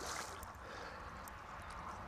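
Faint water sloshing and lapping as a small hooked common carp is drawn in to the landing net.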